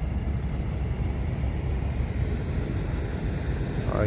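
Steady low rumble of a boat engine running.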